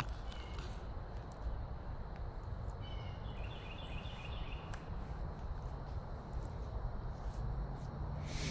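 Steady, even rush of a shallow creek flowing over rocks, with a bird calling a few times about three seconds in.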